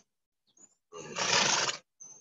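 A horse close to the microphone blowing a breath out hard through its nostrils, one noisy exhalation lasting about a second.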